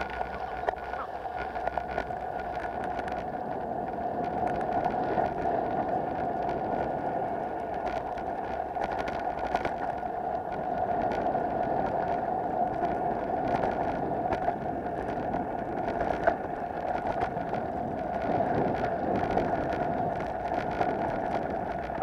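Bicycle ridden over a dirt track: a steady rolling buzz from the tyres and drivetrain, peppered with many small clicks and rattles from bumps and loose stones.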